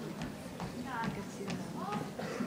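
Quiet murmur and scattered laughter from an audience in a school auditorium, with a few faint clicking footsteps of heels crossing the stage.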